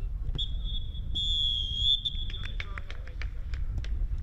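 Referee's whistle: one long high blast of about two seconds, followed by several short sharp knocks.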